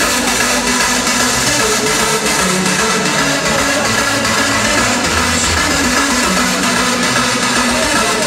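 Hardstyle DJ set playing loud through a large arena sound system: a dense, continuous wall of electronic music with held synth notes that shift in pitch.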